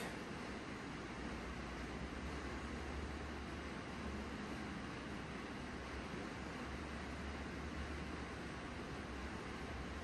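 Steady hiss of rain, with a low steady hum beneath it.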